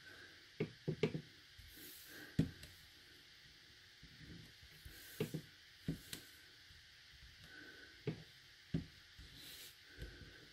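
Hands pressing and lifting small clear rubber-stamping stamps on cardstock: about ten short, light taps and knocks spread unevenly, with faint handling noise between them.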